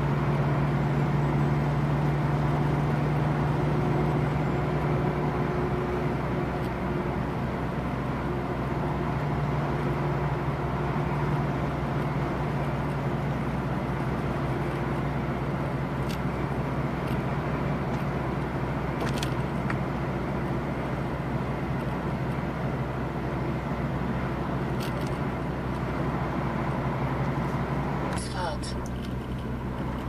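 Delivery truck's diesel engine running steadily at road speed, heard from inside the cab, with a steady low drone over tyre and road noise. The drone changes near the end as the truck slows.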